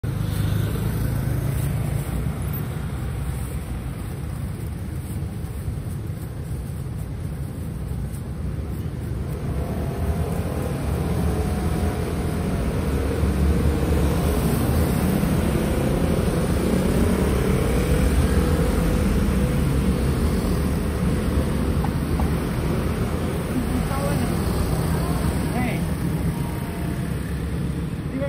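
Street traffic: a steady low engine rumble from vehicles on the road, swelling louder from about a third of the way in and easing off toward the end.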